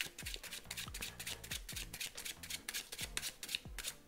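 A deck of playing cards being shuffled in the hands: an uneven run of quick card snaps, about five a second.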